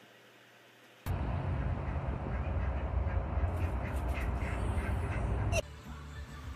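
Repeated short animal calls over a loud low rumble. They start suddenly about a second in and cut off abruptly shortly before the end.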